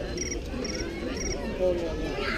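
Cricket chirping, short pulsed chirps about two a second, over a low background murmur.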